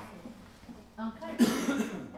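Indistinct talk among a few people at a table, with a cough about a second and a half in.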